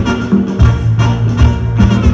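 Live band music from a Brazilian band with brass, guitar and percussion: a strong held bass line under regular drum hits.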